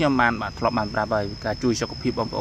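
A person talking, with a steady high-pitched trill, like an insect's, running underneath.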